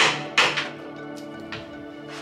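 Wooden mallet striking a carving chisel into a wooden log: two sharp knocks about half a second apart, then a few fainter taps, with background music playing under them.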